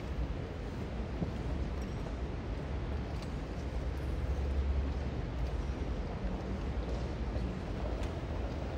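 Steady low rumble and light hiss of auditorium room noise, with no music playing yet; a few faint clicks.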